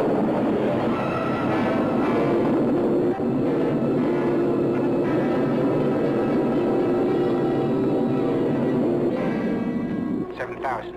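Film soundtrack: a loud, steady drone of held tones, the spaceship's rocket-engine effect mixed with the music score.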